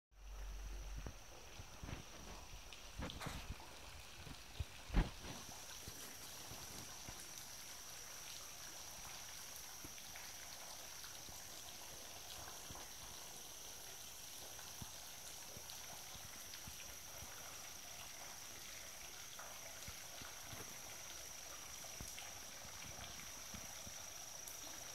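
Faint woodland ambience: a steady, high insect chorus that grows stronger after about five seconds, over a faint trickle of shallow water in a muddy creek bed. A few knocks come in the first five seconds, the sharpest about five seconds in.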